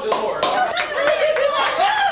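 A small group of people clapping by hand, with voices talking over the applause just after a group song.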